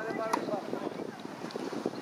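Tennis racket strikes on a ball, a few sharp pops about a second apart, with wind buffeting the microphone.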